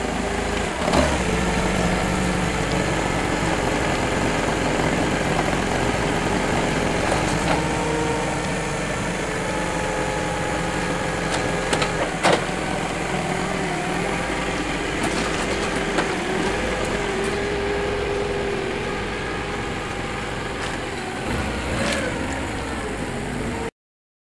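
Toyota forklift running steadily as it lifts and carries a loaded steel machine table, with a few sharp clicks and knocks along the way. The sound cuts off abruptly just before the end.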